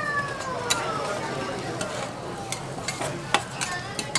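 Flat noodles sizzling on a hot iron griddle as steel spatulas stir and scrape them, with sharp clicks of metal on the plate, loudest near the end. A high tone falls slowly in pitch over the first second and a half.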